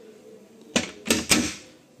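Caravan bathroom door pushed shut, its recessed flush latch clicking into place: three sharp clicks in quick succession about a second in.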